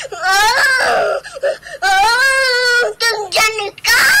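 A voice wailing in long drawn-out cries: one wail bends up and falls away, a second is held with a wavering pitch, short broken cries come between, and another wail starts near the end.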